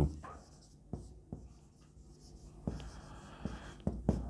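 Marker pen writing on a whiteboard: a few light taps of the tip, then a longer rubbing stroke in the last second or so.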